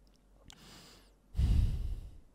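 A man breathing close to a microphone: a soft inhale, then a short, heavier sigh-like exhale about a second and a half in.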